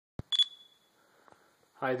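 A click, then a short, high electronic beep that fades within about half a second: a camera's start-of-recording tone.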